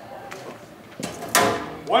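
Low room noise, then about a second in a short, loud burst of a person's voice with a sharp onset.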